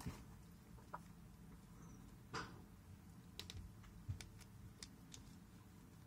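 Faint clicking and light rubbing of small plastic parts as a palm-sized plastic transforming robot figure is handled and its pieces pegged together. There is a soft scrape a couple of seconds in, then a run of short sharp clicks.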